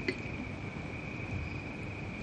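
Crickets trilling steadily: one continuous high-pitched note over faint background hiss.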